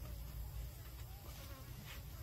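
A flying insect buzzing faintly, its pitch wavering, over a steady low rumble.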